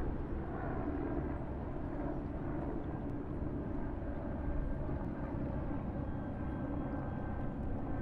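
A steady low outdoor rumble, even throughout, with no distinct events.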